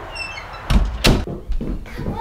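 Front door being shut: two sharp knocks in quick succession about a second in, then a lighter thump.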